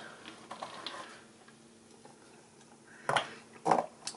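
Handling noise of wire being bent around a plastic bottle: faint rustles and light ticks, then two sharp clicks about half a second apart near the end.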